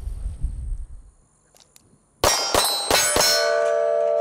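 Four sharp shots in quick succession, spread over about a second, from a pistol fired while the shooter leaves the shooting position. A metallic ringing tone follows and holds steady.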